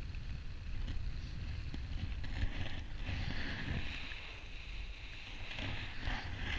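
Wind rushing over an action camera's microphone in paraglider flight: a steady low buffeting rumble with a hiss that grows stronger about halfway through.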